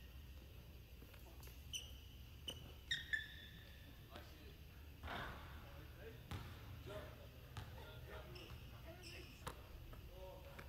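Faint basketball dribbling and bouncing on a hardwood gym floor, with a few short, high sneaker squeaks from players cutting on the court, the loudest about three seconds in.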